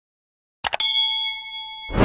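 Two quick clicks, then a notification-bell ding that rings and fades over about a second: the sound effect of the animated subscribe bell being clicked. A loud noisy burst begins just at the end.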